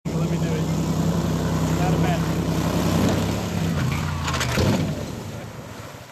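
Boat outboard motor running hard at full throttle with a steady drone. About four and a half seconds in there is a short clatter of knocks as the boat hull strikes and scrapes over a beaver dam, then the engine sound fades.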